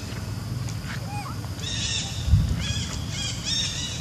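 A run of short, high-pitched animal calls, each rising and falling, repeating several times a second from about a second and a half in, over a low steady rumble. A single thump a little past the halfway point is the loudest moment.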